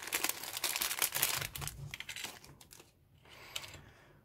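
Thin clear plastic parts bag crinkling as it is handled and opened, busiest in the first two seconds, then dying away.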